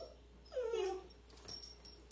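A 13-week-old Comfort Retriever puppy whining once, a short call about half a second long that falls in pitch.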